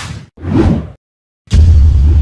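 Logo-sting sound effects: a quick whoosh, then a second swelling whoosh, a brief silence, and about one and a half seconds in a loud, deep boom that keeps rumbling.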